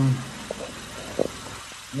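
The Kia Soul's 1.6-litre GDI four-cylinder idling as a low steady hum while it runs an engine flush, with two brief clicks about half a second and a second in.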